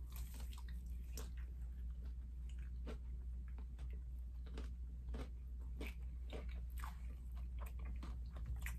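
Mouth biting into and chewing a KFC spicy crispy fried chicken sandwich: a scattered, irregular run of sharp crunches and wet mouth clicks over a steady low hum.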